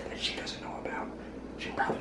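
Soft whispering, with a cleaver cutting through a raw potato and knocking on a wooden cutting board near the end.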